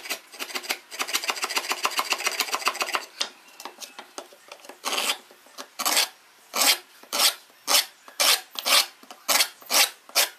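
Steel bench chisel scraping and paring along a groove in a block of wood: rapid short strokes for the first few seconds, then from about halfway separate, louder strokes about two a second.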